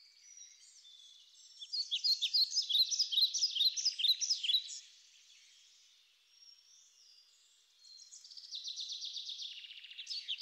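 Songbirds singing: quick runs of high chirping notes, a louder burst about two seconds in lasting some three seconds, a quieter spell, then more song starting near the eighth second.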